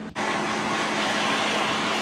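MAPP gas torch burning with a steady hiss, starting abruptly, as its flame heats the cast-steel differential in a post-weld heat treatment that slows the cooling so the cast and the mild-steel truss contract at an even rate.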